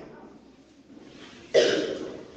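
A man coughs once, a short sudden burst about one and a half seconds in, after a pause with only faint room noise.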